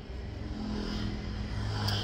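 Car running, heard from inside the cabin: a steady low engine hum with road noise, and a brief click near the end.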